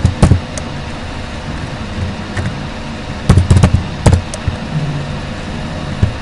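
Keystrokes on a computer keyboard: a few sharp clicks near the start and a cluster of knocks about halfway through, over a steady background hum and hiss.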